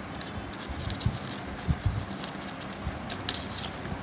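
Flat plastic craft wire being handled and pulled through a woven knot: irregular light rustling and clicking of the plastic strips, with a few soft low thumps, over a faint steady hum.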